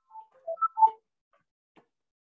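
A quick run of four short tones at different pitches, all within about the first second; the last one is the loudest.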